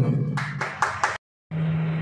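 A few sharp hand claps from a crowd, then the sound drops out for a moment at an edit and comes back as a steady low hum.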